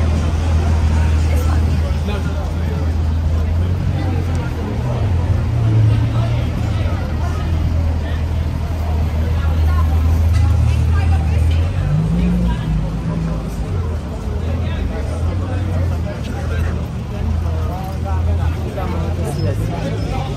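Busy city pavement: overlapping chatter of passing pedestrians over a steady low rumble of road traffic, with vehicles idling and moving in the street beside the kerb. The rumble steadies for the first half and then wavers and shifts a little past halfway.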